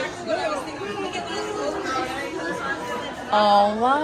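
Several voices chattering at a moderate level, then a woman exclaims a loud, drawn-out "oh" near the end.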